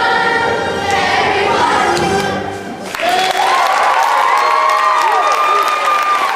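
A group of children singing the closing number with music, ending about three seconds in. An audience then breaks into loud applause, with high cheers sliding up and down in pitch.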